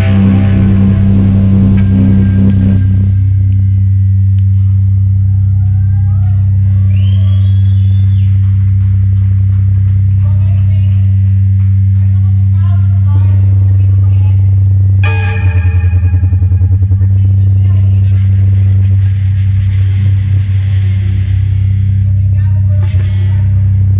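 Live noise music from amplified electronics and effects pedals: a loud, steady low drone with warbling, gliding squeals and clicks over it. About fifteen seconds in, a harsher layer of noise comes in and the drone pulses rapidly for a couple of seconds.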